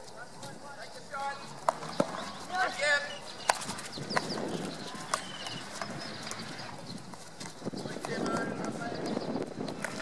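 Field hockey sticks striking a hard ball: several sharp cracks spaced irregularly, with players' shouted calls between them.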